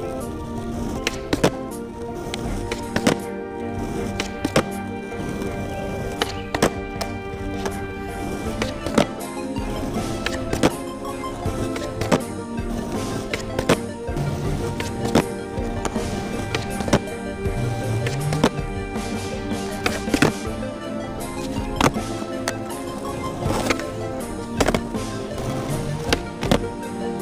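Background music over a skateboard on asphalt: many sharp clacks at irregular intervals as the board's tail pops and the deck lands during repeated kickflip attempts.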